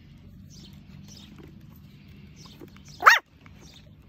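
Nine-week-old Bolonka puppy giving a single short bark about three seconds in, rising and falling in pitch.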